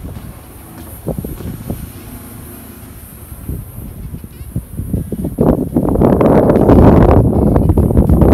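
Wind buffeting a phone microphone: a light rumble at first, then a loud, gusting rumble from about five seconds in that drops off abruptly just after the end.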